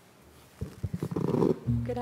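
Handling noise on a podium microphone: a run of knocks and rubbing as things are set in place at the lectern, after a moment of quiet room tone. A voice begins near the end.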